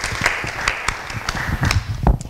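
Small audience applauding, dying away near the end.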